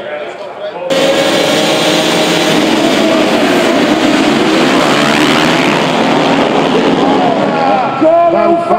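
A pack of racing motorcycles revving and accelerating together off a race start, many engines at once with pitches rising as they pull away. The loud engine noise begins suddenly about a second in.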